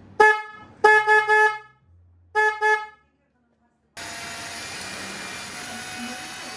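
Screaming Banshee mini electric horn on a Sur Ron electric dirt bike being tested: about six short honks in three quick bursts, one steady fairly low pitch. After a break of about a second, a cordless drill runs steadily, boring out a mounting hole.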